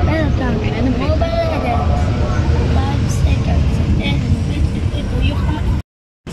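Steady low rumble of a moving road vehicle, with a voice over it in the first couple of seconds; the sound cuts off suddenly just before the end.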